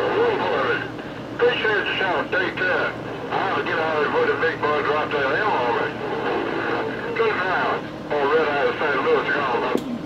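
Another station's voice coming in over a Galaxy CB radio, talking in runs with short pauses, over a steady hiss.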